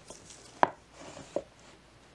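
Hardcover books being handled on a wooden bookshelf: two short sharp knocks, the first and louder a little over half a second in, the second about a second later, with faint rustling of covers and pages between them.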